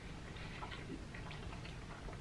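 Faint, scattered soft clicks and crackles of food close to the microphone: a cheese-covered hot dog in its bun being handled and squeezed, with quiet mouth sounds, over a low steady room hum.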